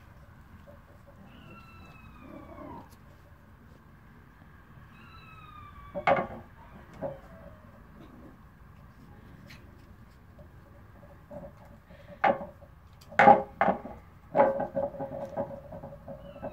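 Plastic wobble board knocking and rattling on the patio floor as a Tibetan Terrier puppy noses and paws at it. The sharp knocks come singly at first, then in a quick clattering run near the end. Earlier, a few faint falling whistle-like calls are heard.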